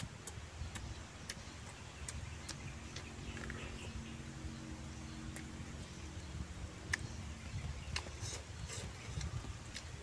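A person chewing a mouthful of braised pork and rice with wet mouth clicks and lip smacks, over a faint low rumble.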